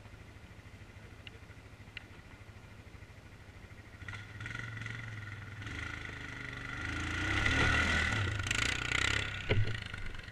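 ATV engine idling, then revving up from about four seconds in and loudest near the end as it pulls off, with a couple of sharp clicks or knocks just before the end.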